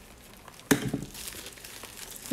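Mail packaging crinkling as it is cut open: a sharp crackle about two-thirds of a second in, then crinkling that fades over about half a second.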